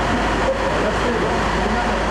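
Steady, loud background hubbub of indistinct voices and noise in a stadium corridor, the location sound of the tunnel footage.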